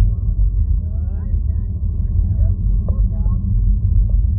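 Steady, loud low rumble with faint voices talking quietly over it.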